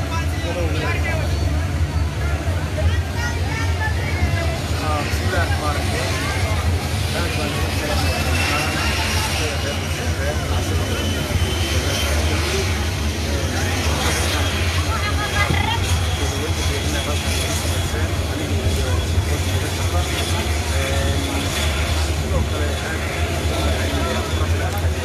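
Men speaking Somali into a handheld microphone over a steady low engine drone. A faint high whine rises slowly partway through.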